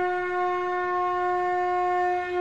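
One long note held steady on a wind instrument, rich in overtones.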